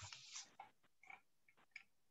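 Near silence: room tone with a few faint, short noises.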